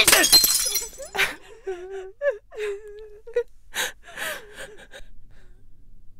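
A loud smash of something breaking and shattering, with a shorter crash about a second later. Then a woman gasps and whimpers in short, wavering cries, broken by another sharp noise near the middle.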